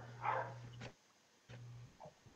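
A brief faint vocal sound, then a low steady hum that cuts off abruptly about a second in and comes back for a moment before fading, leaving the rest quiet.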